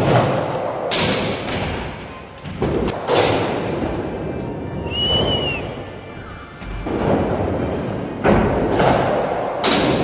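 Skateboard rolling over concrete and wooden ramps, with several loud thuds of the board hitting and landing on ramps and ledges. A short high squeal comes about halfway through.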